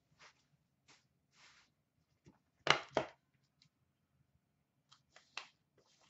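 Sealed cardboard trading card box being handled and opened by hand: scattered brief scuffs and rustles, the two loudest close together nearly three seconds in and a few more near the end.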